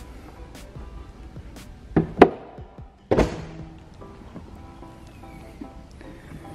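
An Infiniti Q60's hood being shut over background music: two sharp thunks about two seconds in, the second the loudest, then another thunk about a second later.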